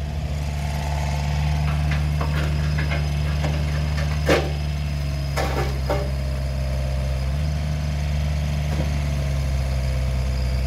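Volvo ECR48 compact excavator's diesel engine running steadily as the machine slews and works its arm, with a faint whine over it and a few sharp metallic clunks around the middle, the loudest about four seconds in. The engine note changes a little about seven seconds in.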